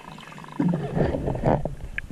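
Scuba diver exhaling through a regulator: a burst of bubbles that rumbles and gurgles past the microphone for about a second.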